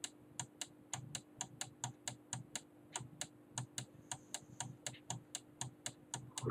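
Rapid, fairly even clicking from a computer's keyboard or mouse, about five clicks a second, as a document is scrolled, over a faint steady hum.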